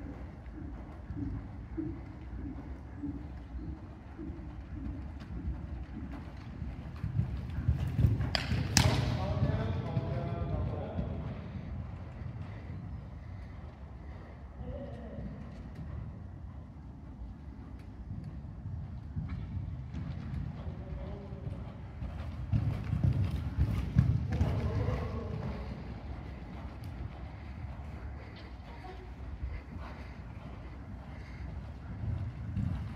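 Horse's hoofbeats on a sand arena surface as it canters round, growing louder twice, about eight seconds in and again around twenty-four seconds.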